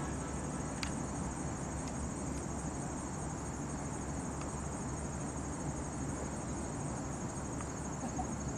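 A steady, high-pitched chorus of trilling insects, typical of crickets, over a constant low outdoor rumble, with a few faint ticks.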